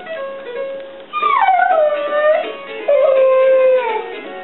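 Alaskan malamute howling along to a musical toy's tune. About a second in, one long howl slides down in pitch and then holds. A second long howl follows just before the three-second mark.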